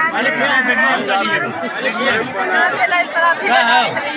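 Speech only: several people talking over one another in Hindi.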